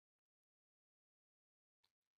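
Near silence: the sound track is all but empty, with no audible sound.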